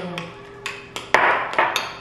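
Metal spoon clinking and scraping against a glass bowl while stirring mashed strawberries into whipped icing: about five sharp clinks in the second half, the loudest just after a second in.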